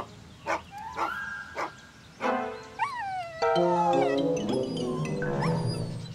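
A cartoon bulldog's performed dog sounds over background music, getting louder a little after two seconds in.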